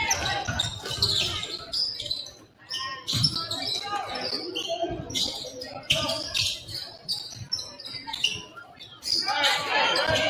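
A basketball bouncing on a hardwood gym floor in irregular thuds during play, with players' and spectators' voices echoing in the gym.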